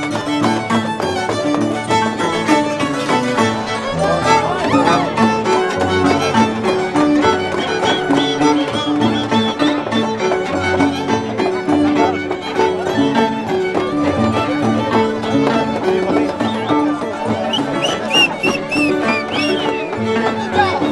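Andean harp and violin playing a toril: the harp plucks a repeating bass line under the violin's wavering, ornamented melody, at a steady lively pulse.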